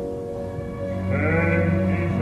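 Opera orchestra holding a chord that fades. About a second in, an operatic voice with wide vibrato enters over low sustained orchestral notes.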